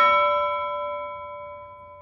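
A clock-chime bell struck once, ringing on and fading away over about two seconds.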